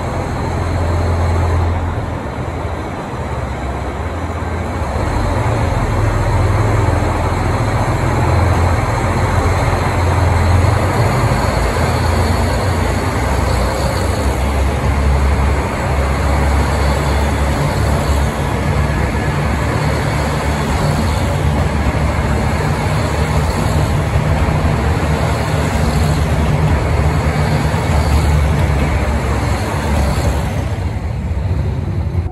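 A KiHa 183 series diesel multiple unit pulling out and passing close by, its diesel engines running under power with a heavy low rumble, getting louder a few seconds in as the train picks up speed.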